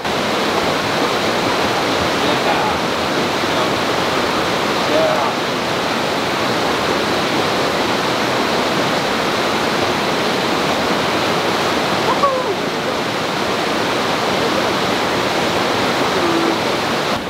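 Fast-flowing river running over rocks in white-water rapids: a steady, loud rush of water.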